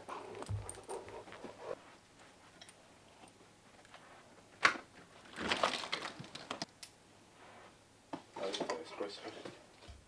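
Handling noises at a door: a sharp click about halfway through, then two bursts of jangling and rustling.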